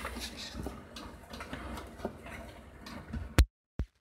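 Light clicks, taps and rustling of a hang-on algae scrubber unit, its airline tubing and cable being handled and fitted against an aquarium's glass rim. A sharp click comes near the end, followed by a moment of dead silence.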